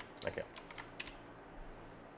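Computer keyboard typing: a few light, scattered keystroke clicks, mostly in the first second.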